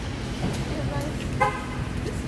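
A short, single car horn toot about one and a half seconds in, over a low steady rumble.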